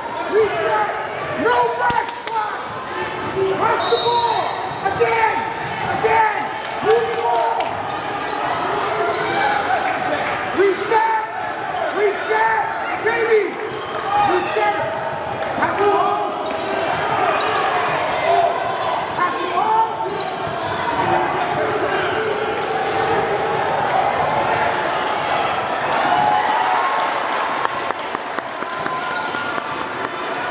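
A basketball bouncing on a hardwood gym floor as players dribble, over a steady background of spectators' and players' voices echoing in a large hall.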